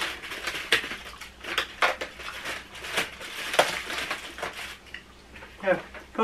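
Cardboard Cadbury Dairy Milk advent calendars being handled and their doors pushed open, giving irregular crackles, snaps and rustles of card and plastic packaging.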